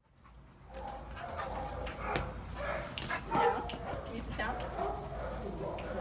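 Young bully-breed dog making repeated short vocal sounds while playing, rising and falling in pitch, mixed with a few sharp clicks.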